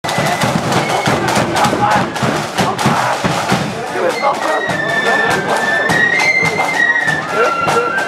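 Loyalist marching flute band playing as it approaches: steady drum beats throughout, with the high flute melody coming in clearly about halfway through. Crowd chatter is heard over the band in the first half.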